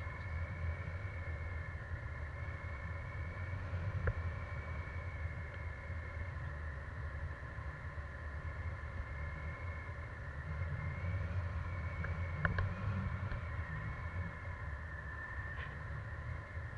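Airflow buffeting the camera's microphone in flight under a tandem paraglider, a steady low rumble that swells and eases. A faint steady whine sits above it throughout.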